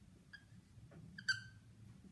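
Dry-erase marker squeaking against a whiteboard while writing: a faint short squeak, then a louder squeak just over a second in that falls slightly in pitch.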